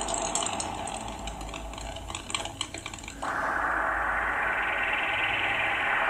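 Cartoon sound effects from an old anime soundtrack: light, irregular clicks of drops hitting the ring canvas over a low hum. About three seconds in, a steady noise suddenly takes over.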